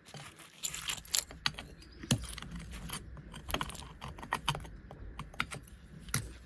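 Concrete pieces being broken out of a freshly cut wall chase and picked away by a gloved hand: irregular small clinks, knocks and scrapes of concrete fragments against the concrete.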